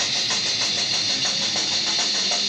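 A death metal band playing live: a dense wall of distorted electric guitars over fast, evenly repeated drum hits, recorded loud on a camcorder microphone.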